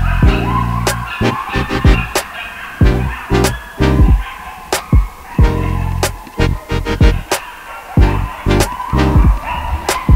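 Background music with a driving beat: sharp drum hits over low bass notes.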